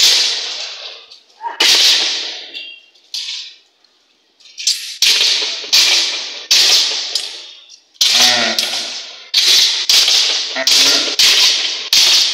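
Swords clashing against round metal shields in a kalaripayattu sword-and-shield bout: sharp metallic clangs, each with a ringing tail. A few spaced strikes come first, then a quick flurry of blows in the second half.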